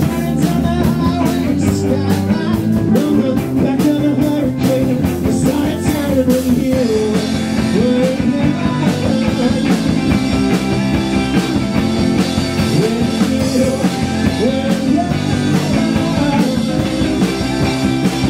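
A live rock band playing loudly: electric guitars, electric bass and a drum kit, with bending pitched notes weaving through the middle of the sound.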